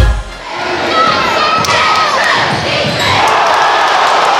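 Game sound from a high school gym: a basketball bouncing a few times on the court amid crowd chatter. The crowd noise swells near the end.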